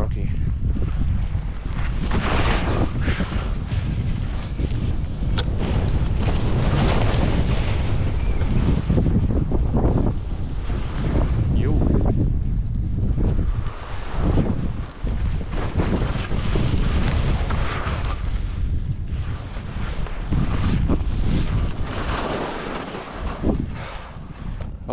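Wind buffeting the camera microphone at skiing speed, with skis hissing and scraping over packed snow in surges every second or two; it all fades near the end as the skier slows to a stop.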